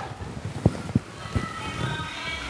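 Soft background music with held notes comes in about halfway through, under a few light knocks from a cable being handled.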